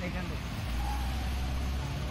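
A nearby vehicle's engine running: a low, steady rumble that grows stronger about half a second in, under street background noise.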